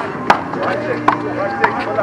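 Sharp slaps of a small rubber handball during a rally, struck by bare or gloved hands and bouncing off the concrete wall and court, several hits in quick succession with the loudest near the start.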